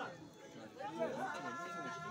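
Men's voices talking, followed by a single man's voice holding a long sung note that comes in about halfway through.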